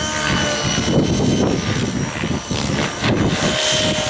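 Nitro-engined radio-controlled model helicopters flying low aerobatic flips. A steady high-pitched engine whine runs over the rough chop of the rotor blades, which swells and fades as the helicopters manoeuvre.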